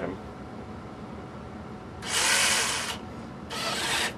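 Small electric motor whirring as it drives the brass gear train along the track and runs the wristblades out, in two runs: about a second long starting two seconds in, then a shorter one near the end.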